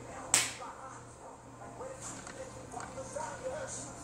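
A single sharp smack about a third of a second in, dying away quickly, over faint voices in the background.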